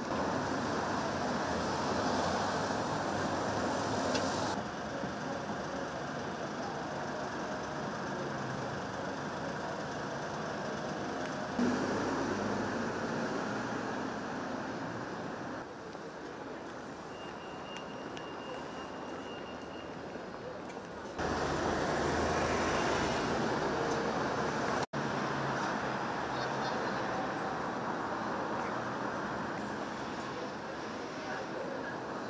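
City street ambience: road traffic passing and people talking in the background. The sound changes abruptly several times, and a thin high steady tone sounds for about three seconds in the middle.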